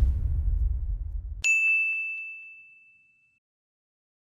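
Title-card sound effects: a low rumbling whoosh that cuts off about a second and a half in, then a single bright ding that rings and fades away over about two seconds.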